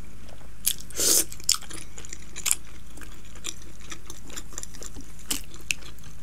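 A person chewing and eating close to the microphone: wet mouth clicks and smacks, the loudest burst about a second in, with scattered sharper clicks after.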